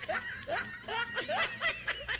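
A person snickering: a run of short, quiet giggles.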